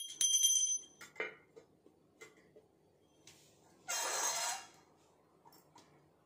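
A puja hand bell rings with a steady high tone and stops about a second in. A few faint clinks follow, and there is a brief hiss around four seconds in.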